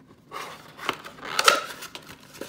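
Paper packaging rustling and scraping against the cardboard walls of a box compartment as it is pulled out by hand, with a few sharp clicks; loudest about a second and a half in.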